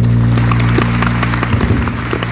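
A theatre orchestra holds a low final chord at the end of the show. Scattered audience clapping starts to break in and grows thicker.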